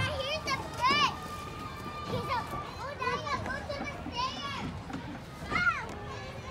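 Children playing at a playground: short, high-pitched shouts and squeals from several children, one after another, the loudest about a second in and again near the end, over a steady outdoor background.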